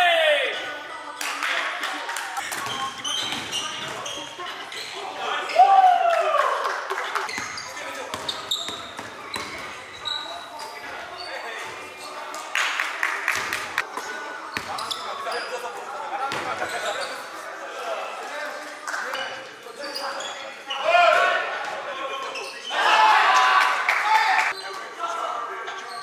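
Live court sound of a pickup basketball game: a basketball bouncing on a hardwood floor and players' shoes hitting the floor, with players calling out, all echoing in a large gym. The sound comes in many short knocks, with louder stretches near the end.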